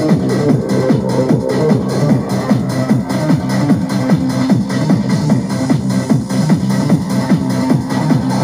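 Hard house techno music from a live DJ set, loud, with a fast, steady beat of repeated bass hits.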